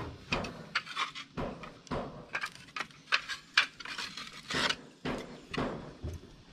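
Thick clay roof tiles clacking and scraping against one another as they are lifted from a stack and handed over, a quick irregular run of sharp clinks.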